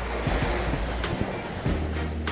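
Steady rush of wind buffeting the phone's microphone, with surf washing on the shore, and a single sharp click about a second in.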